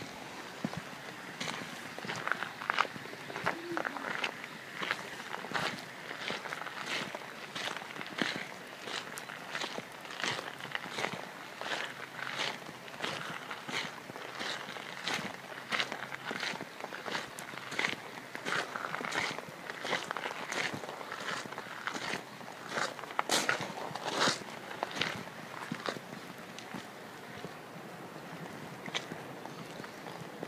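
Footsteps of a person walking along a garden path, about two steps a second. They begin about a second in and stop shortly before the end.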